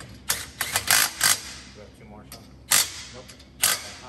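Cordless impact wrench running lug nuts onto a rear wheel. It hammers in several short bursts during the first second or so, then once more before the middle and once near the end.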